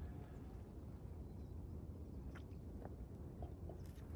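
A person quietly sipping and swallowing rinse water from a wooden bowl, heard as a few faint clicks over a low, steady outdoor rumble.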